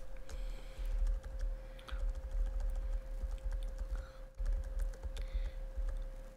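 Computer keyboard keys being tapped in an irregular run of clicks, with low thumps and a faint steady hum underneath.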